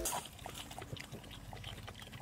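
French bulldogs drinking from a portable dog water bottle: faint wet lapping and breathing in short small clicks.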